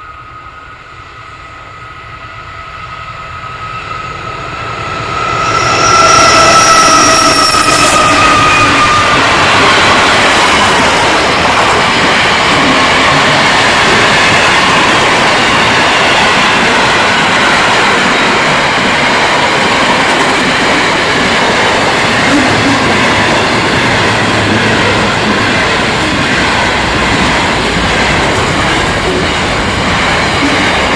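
Container freight train: a locomotive horn sounds a steady note as the train approaches, dropping in pitch as the locomotives pass about six to eight seconds in. After that comes the loud, steady roar and clatter of container wagons rolling past at speed.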